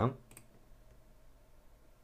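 A single computer mouse click, a short sharp tick, from clicking the Start button to build and run the program, followed by quiet room tone with a faint steady hum.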